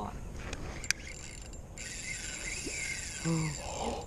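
Spinning reel working under a fish's pull: a sharp click about a second in, then a steady high mechanical rasp from about halfway on. The reel sounds rough because it is broken, its bearings damaged in a drop on concrete.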